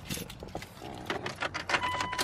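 Irregular clicks and knocks of handling inside a car with its door open, and a steady electronic warning chime starting near the end.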